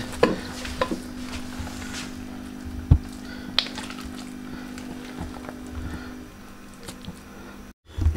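Thick malai (cream) tipped out of a plastic bowl into a non-stick karahi, with one sharp knock as the bowl strikes the pan about three seconds in and a few smaller clicks. A steady low hum runs underneath and stops about six seconds in.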